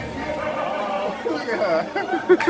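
Indistinct chatter of people talking, with the voices growing livelier in the second half.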